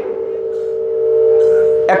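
A man's amplified voice holding one long, steady note on a single pitch, swelling slightly before speech resumes near the end.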